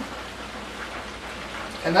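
Steady hiss of chicken wings deep-frying in hot oil.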